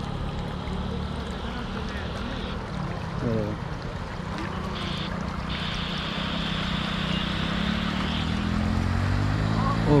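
TVS Apache 160 motorcycle engine running steadily as the bike rides through a shallow flooded river, with rushing water; it grows slowly louder toward the end as the bike comes closer.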